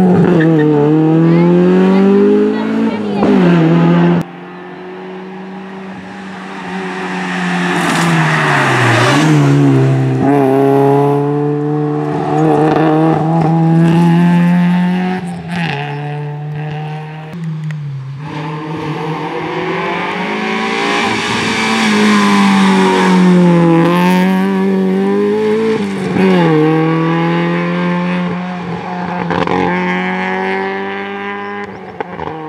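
Opel Kadett GSi rally car's four-cylinder engine revving hard, its pitch climbing and dropping again and again as the car is driven across a grassy field. The sound drops suddenly about four seconds in, and the engine is then more distant before building again.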